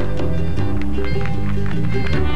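Children's TV background music filling a pause for the viewer to answer: a repeating pattern of low notes with light ticking percussion.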